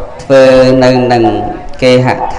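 A Buddhist monk's voice chanting, holding one long, steady-pitched syllable and then starting the next near the end.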